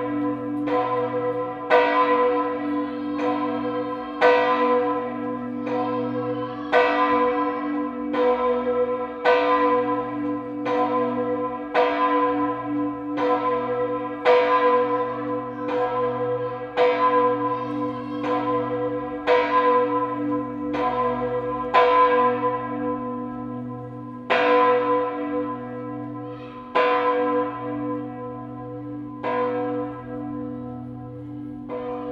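The Kajetansglocke, a 2,384 kg bronze church bell tuned to B (h°) and cast in 1967 by Karl Czudnochowsky, swinging alone in its new oak bell frame. Its clapper strikes about once every 1.2 seconds, each stroke ringing on into the next over a steady low hum.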